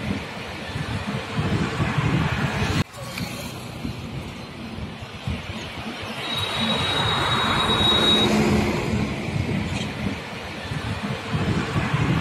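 Outdoor road-traffic noise with no clear tone: a vehicle grows louder and passes about seven to eight seconds in, carrying a thin steady high whine. The sound breaks off abruptly about three seconds in, then resumes.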